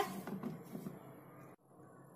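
Faint, soft rustling of a hand tossing raw potato strips in cornflour on a plastic plate, stopping abruptly about a second and a half in, after which there is near silence.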